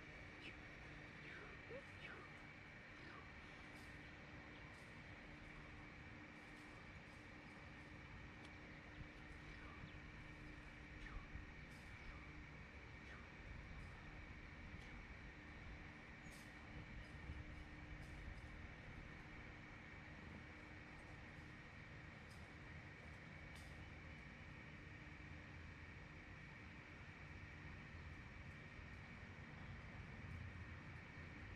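Near silence: faint outdoor background with a steady low hum and a steady higher whine, broken by a few faint clicks.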